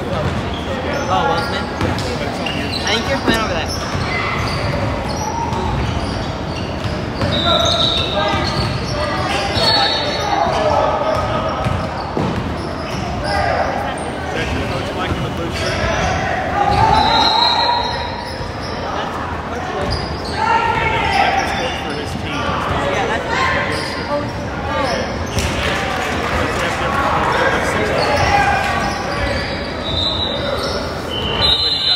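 Basketball game sounds in a large gym: the ball bouncing on the hardwood court, with short high sneaker squeaks a few times and players' voices calling out, all echoing in the hall.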